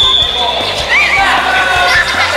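A short, steady, high whistle blast starts a children's sprint. It is followed by running feet thudding on artificial turf and the children's shouting voices, over background music.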